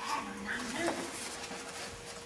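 A small dog whining briefly, mixed with a person's low voice, over a faint steady hum.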